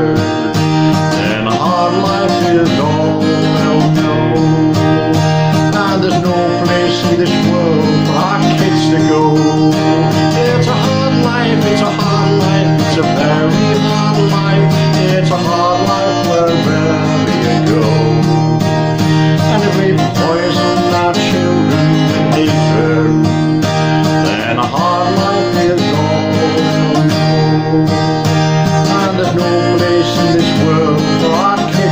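Acoustic guitar strummed steadily through a country-folk song, with a man singing over it.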